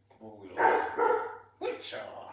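German shepherd puppy barking, a few short, loud barks.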